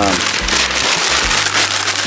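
Paper being crumpled and rustled by hand, a dense, steady crackling rustle, as it is packed into a wood stove's firebox.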